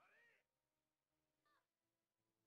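Near silence, with only very faint, brief pitched traces that are barely audible.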